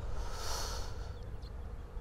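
A short, breathy sniff or exhale close to the microphone, about half a second in, over faint outdoor background noise.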